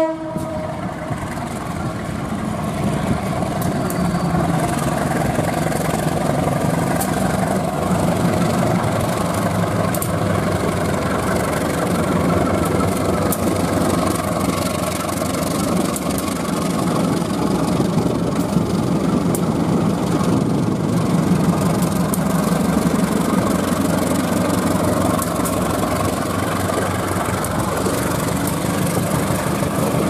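Indonesian diesel-electric locomotive hauling its train past at close range: a steady engine drone mixed with the rumble of wheels on the rails, growing louder over the first few seconds.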